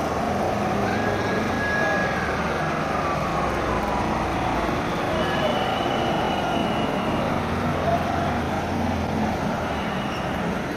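Cars and SUVs of a motorcade driving past on a road at a steady traffic rumble, with voices of roadside onlookers mixed in.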